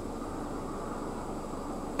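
Steady rush of air from a Jaguar F-Pace's climate control fans inside the cabin, with the cooled seats running.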